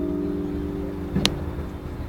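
Acoustic guitar's final chord ringing on and slowly fading at the end of a flamenco song, with one sharp click a little past halfway.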